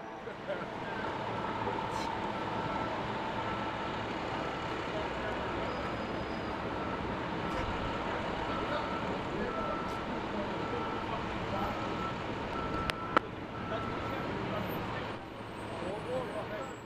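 Steady city street noise, with traffic and indistinct voices. A short high beep repeats about once a second through most of it, and there is a single sharp click about thirteen seconds in.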